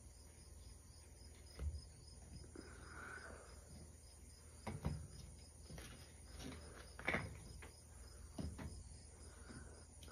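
A deck of cards being shuffled and handled, with a few soft snaps and taps, the loudest about a second and a half in, nearly five seconds in and about seven seconds in. Under it, faint, even insect chirping, typical of crickets.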